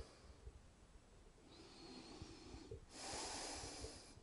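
A man breathing quietly in his sleep: a soft breath about one and a half seconds in, then a fuller, louder one near the end.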